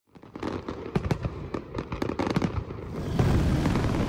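Fireworks going off: a quick, irregular string of sharp bangs and crackles that gives way, about three seconds in, to a denser, steadier rumble.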